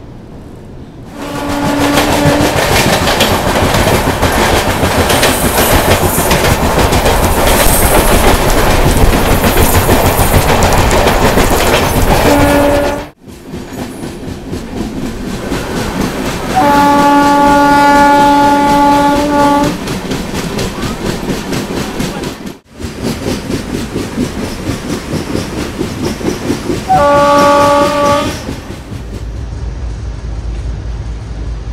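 Train running at speed, wheels clattering over the rails, with several blasts of a locomotive horn: short ones about a second in and near the end, and a long one of about three seconds in the middle. The sound breaks off sharply twice.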